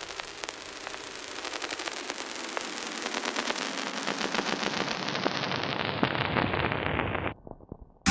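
Crackling noise effect in an electronic music transition: dense clicks and hiss swell louder while the sound grows gradually duller, then cut off suddenly less than a second before the end.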